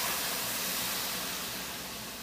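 Lemon juice hitting a hot frying pan of Brussels sprouts sautéed in butter, sizzling into steam as it deglazes the pan. The loud hiss slowly fades.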